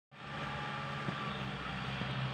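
Farm tractor engine running steadily while it tills a field, a constant low hum.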